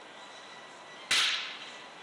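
A single sharp clack of billiard balls striking, about a second in, ringing briefly in the hall. The balls on the filmed table do not move, so it comes from a shot on a neighbouring table.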